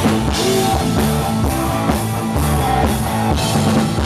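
Rock band playing live: drum kit, bass and electric guitar with a steady beat.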